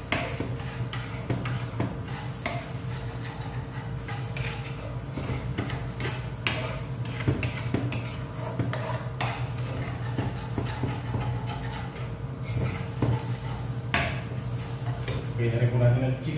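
Metal spoon stirring and scraping a thick cornstarch gravy in a non-stick frying pan, with irregular clinks of the spoon against the pan.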